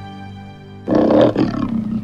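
Soft music with held notes dies away, then about a second in a big cat's roar starts suddenly. It is the loudest thing here and trails off.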